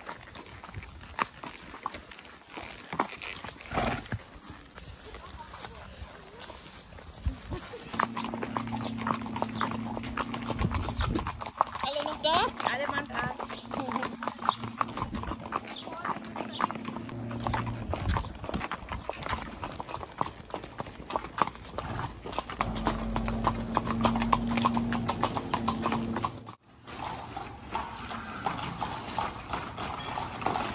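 Haflinger horses' hooves clip-clopping on paved ground as several horses walk along, with voices in the background. A low steady hum comes and goes.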